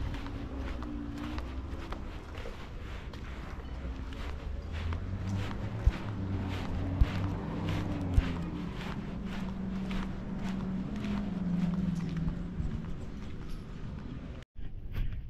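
Footsteps on a concrete path, about two steps a second, with a low droning hum that swells through the middle of the stretch and fades near the end.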